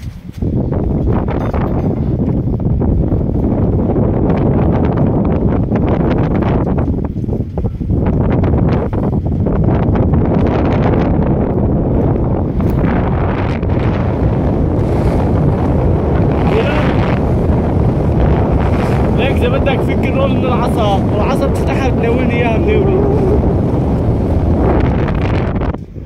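Loud, steady wind noise buffeting a phone's microphone, with the sea rushing below. It starts abruptly and cuts off suddenly just before the end.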